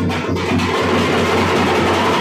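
Tamil folk frame drums (parai) beaten with sticks in a fast, dense rhythm, the strokes running close together.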